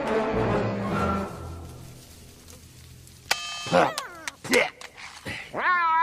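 Orchestral music with brass ending and fading away over the first two seconds. After a quiet moment the film's soundtrack begins with a few sharp sounds and, near the end, one drawn-out cry that rises and then falls in pitch.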